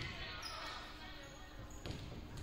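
A volleyball bouncing on the hardwood gym floor, one sharp bounce near the end, over faint background chatter.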